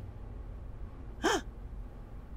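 A single short, quiet "huh" from a man's voice a little over a second in; otherwise only room tone.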